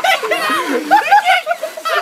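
People laughing and exclaiming in high-pitched, overlapping voices.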